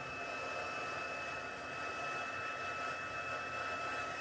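Craft heat gun running steadily, its blowing air carrying a steady high whine, as it melts white embossing powder on cardstock.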